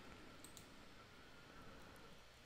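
Near silence with a few faint computer mouse clicks, the clearest about half a second in.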